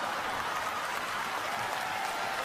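Stand-up comedy audience applauding: a steady, even wash of clapping.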